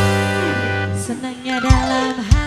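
Live dangdut band playing: sustained keyboard and guitar notes with a descending run in the middle, and a sharp drum hit near the end.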